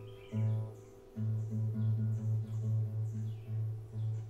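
Nylon-string classical guitar with one low string plucked over and over at the same pitch, about three to four times a second, the way a string is plucked while tuning it against a phone tuner app.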